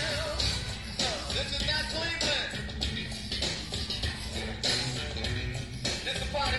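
A live funk band playing, heard as a direct soundboard recording: a driving rhythm section with a bending melodic line on top.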